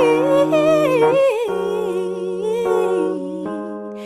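A woman's voice singing a wordless melody with vibrato over sustained keyboard chords. It grows gradually quieter over the last couple of seconds.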